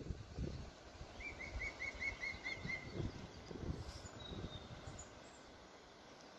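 Outdoor ambience with a small bird calling a quick run of about eight repeated short notes, about five a second, beginning a second in. Irregular low rumbles sit underneath and die away near the end.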